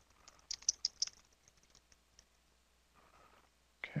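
Computer keyboard being typed on: a quick run of key clicks in the first second or so, then a few scattered, fainter keystrokes.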